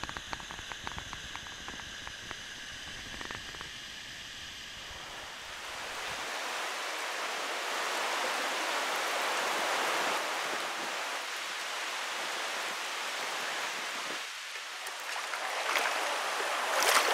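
Creek water running over rocks. For the first few seconds it is quieter, under a low rumble with scattered crackles. From about six seconds in comes a louder, steady rush of water that dips briefly near the end and swells again.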